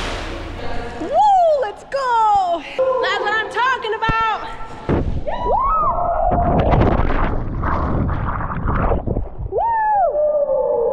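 A woman screaming and whooping as she jumps from a rock ledge, with long gliding cries and then a quick string of short yells. Then a splash into deep water, churning water and her breathing as she surfaces, and one last whoop near the end.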